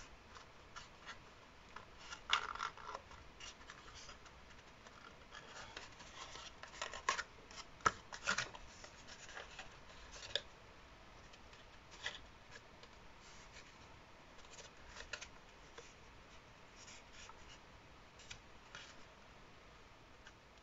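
Folded cardstock being handled and pressed between the fingers: faint, scattered rustles and crinkles of stiff paper. They are busiest around two seconds in and again around seven to eight seconds in.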